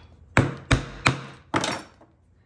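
Steel hole punch struck four times in quick succession, driving it through a small round of eight-ounce veg-tan leather to cut the centre hole; each strike is sharp with a short ring.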